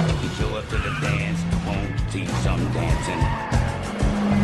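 A pickup truck driving fast on a dirt road with its tires skidding, mixed under music.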